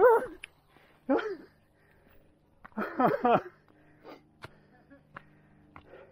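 A mountain biker's wordless vocal sounds, three short outbursts, just after failing to make a turn on the trail. A faint steady hum and a couple of light clicks follow in the second half.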